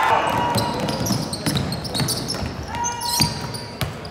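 Basketball game sounds on a hardwood gym court: a ball bouncing, with short squeaks about three seconds in, and players and spectators talking.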